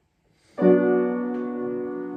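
Piano: a full chord struck about half a second in, held and slowly fading.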